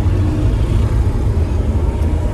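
Steady low rumble of engine and road noise inside the cabin of a moving passenger van.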